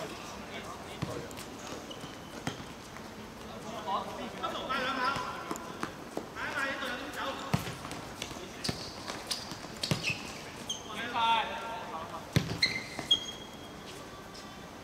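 Players shouting to each other during a seven-a-side football game, with scattered sharp thuds of the ball being kicked, the loudest few close together near the end.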